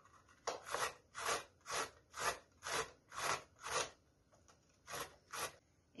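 Carrot being grated on the coarse side of a stainless steel box grater: a run of rasping downward strokes, about two a second, then a brief pause and two more strokes near the end.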